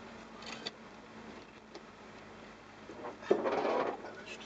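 Inside a jeep's cabin on a rough dirt track: steady low running noise with a faint hum, a brief faint clatter about half a second in, and a louder rough burst of noise lasting about half a second near the end.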